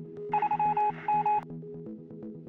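Electronic telephone-like tone beeping in two quick bursts, about a third of a second in and again just after a second, over steady synth music.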